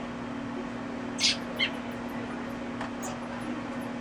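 Two brief high squeaks from a baby big brown bat as it is syringe-fed, about a second in and half a second apart, over a steady low hum.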